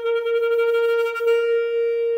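Alto saxophone holding one long, steady note.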